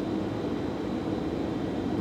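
Steady low background rumble of room noise, with no distinct events.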